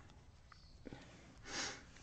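A single short sniff through the nose, about one and a half seconds in, against a quiet room with a few faint ticks.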